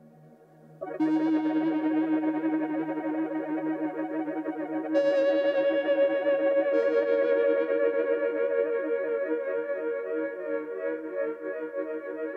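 Dave Smith Instruments Tetra four-voice analog synthesizer playing a demo patch with a little added reverb. After a brief quiet tail, a held chord comes in about a second in, and new higher notes join around five and seven seconds in.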